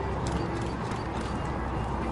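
Hoofbeats of a horse cantering on grass as it passes close by, a run of soft irregular thuds over a steady low rumble of background noise.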